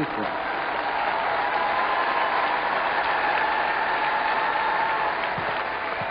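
Large outdoor crowd applauding and cheering, a steady even sound with no break.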